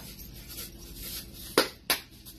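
Garlic powder being shaken from a spice container into a pot, a faint rustle, followed by two sharp clicks near the end as the containers are handled.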